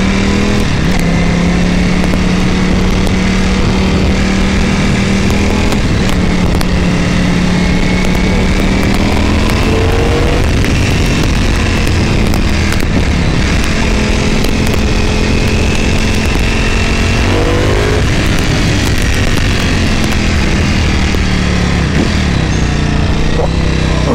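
Ducati Panigale V4 S's V4 engine running under way at a steady middling pitch, rising a couple of times as the throttle opens, then falling near the end as the bike slows. Heavy wind rumble on the camera microphone from riding speed.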